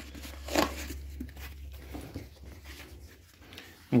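Quiet handling sounds as a skate insole is taken out and handled: a brief scrape or rustle about half a second in, then soft rustling and small clicks, over a low hum that fades after the first two seconds.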